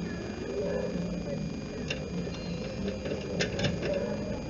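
Muffled, indistinct voices in the background, with a few sharp clicks about two seconds in and again near the end.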